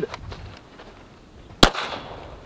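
A single 9 mm pistol shot about one and a half seconds in, sharp and loud, with a short echo trailing after it.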